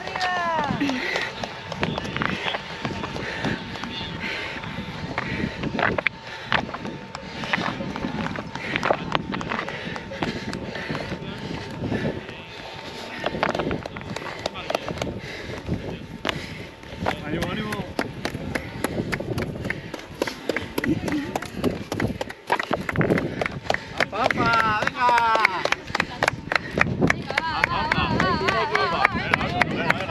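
A trail runner's footsteps on rocky ground and her breathing during a steep uphill climb. Near the end, voices call out and the sound grows louder.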